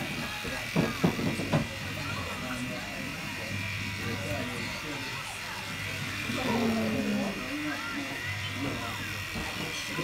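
Electric hair clippers buzzing with a steady low hum that stops and starts several times as they are worked over a squirming child's head. The child's voice cries out in a few short loud bursts about a second in and whines again past the middle.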